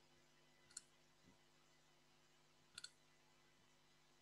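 Near silence broken by faint computer mouse clicks: a single click about a second in, then a quick double click near three seconds.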